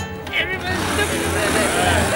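A small step-through moped's engine running at idle, a low steady note with a hiss above it from about a second in, mixed under voices and music.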